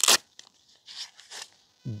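A short cloth-and-metal handling noise as a wooden-handled metal bellows tube is pulled out of a felt storage pouch. Faint rustles and scrapes follow, with a brief thin high squeak near the end.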